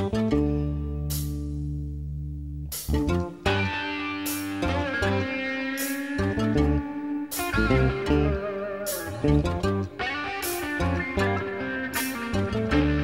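Instrumental break in a song. It opens on a held chord, then a guitar plays a lead line with bent notes over bass and drum hits.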